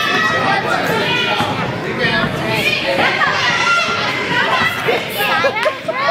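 Indistinct chatter of many children's and adults' voices overlapping, echoing in a gymnasium.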